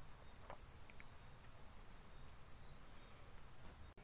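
Faint, high-pitched insect chirping in a steady rhythm of about six chirps a second, with a couple of soft clicks in the first second.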